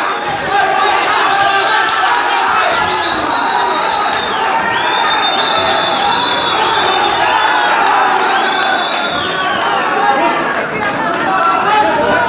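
Boxing crowd in a hall shouting and cheering, many voices overlapping in a steady din, with a few long shrill calls rising above it in the middle.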